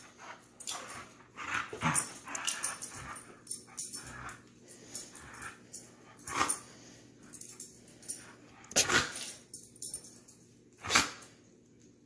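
Golden retriever puppy playing tug-of-war on a rope toy: scattered short dog noises and scuffles, the loudest about six and a half, nine and eleven seconds in.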